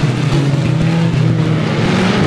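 Several banger racing cars' engines running together as the pack laps the track, a steady mixed engine hum with no single car standing out.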